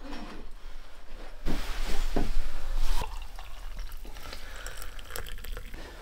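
Coffee poured from a French press into a mug, a rushing pour of about a second and a half that stops abruptly.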